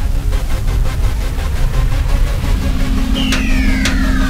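Outro music with a heavy low rumble and a rhythmic pulse. About three seconds in, a falling pitch sweep begins over a held low tone.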